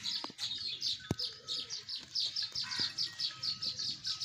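Small birds chirping in a fast, steady run of short high chirps, several a second, with a couple of sharp clicks.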